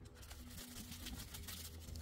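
Faint rubbing of a microfibre rag wiping the underside of a transmission pan, over a low steady hum.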